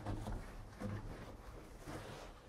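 Faint handling noise of hands rubbing and pressing on a taped, snap-together metal duct, with a couple of soft rustles about a second apart.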